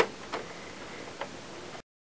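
A T10 Torx driver turns a case screw into a plastic projector housing, giving a sharp click at the start and a few fainter clicks after it. The sound cuts out to silence near the end.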